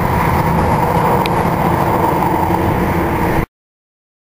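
Steady engine rumble, like a motor vehicle running, that cuts off abruptly about three and a half seconds in.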